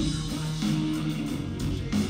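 Live rock band playing an instrumental stretch: electric guitar to the fore, with bass and drums.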